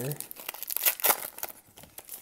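Foil wrapper of a Prizm hobby card pack crinkling and tearing as it is pulled open by hand: a run of crackly rustles, loudest about a second in, then quieting.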